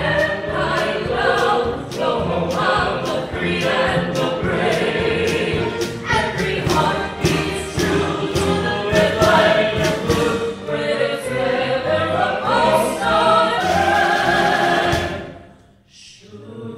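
Vocal soloists singing together with a pops orchestra in a patriotic medley. A loud final chord is held, then cut off sharply just before the end.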